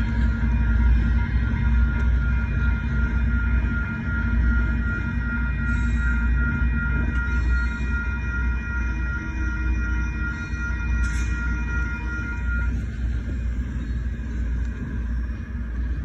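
GO Transit diesel commuter train running away down the line: a steady low rumble that slowly fades. Steady high ringing tones run with it and cut off abruptly about thirteen seconds in.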